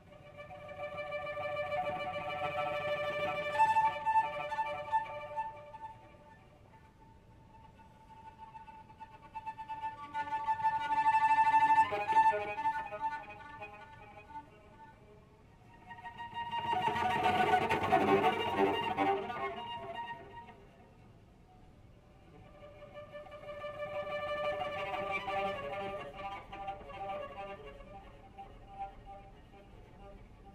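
Solo cello bowed softly in high harmonics, in four slow swells that each rise out of near silence and fade away again.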